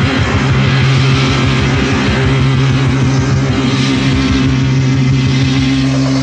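Instrumental stretch of mid-1980s speed metal from a demo-tape recording: distorted electric guitar holding a low, sustained note over a fast, even pulse.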